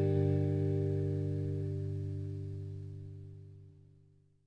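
The closing chord of a jazz ballad, led by guitar, ringing out and fading steadily away to nothing; a few of its higher notes drop out about a second and a half in.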